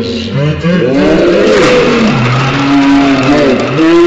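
Several men shouting and whooping in excitement as a Jenga Quake tower collapses, with a clatter of blocks falling onto the wooden table.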